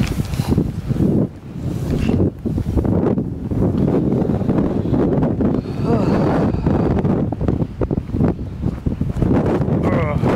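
Wind buffeting a GoPro action camera's microphone in uneven gusts, a low rumbling rush that rises and falls.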